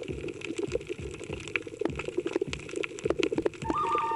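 Underwater water noise picked up by a camera on a coral reef, full of irregular crackling clicks. Near the end a steady held musical tone comes in.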